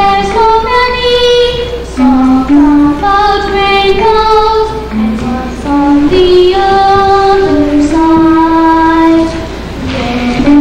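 A girl singing a melody in held notes, with a woodwind playing along.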